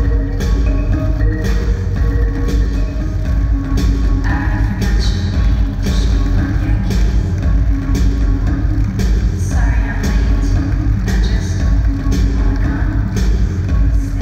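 Runway music with heavy bass and a steady beat.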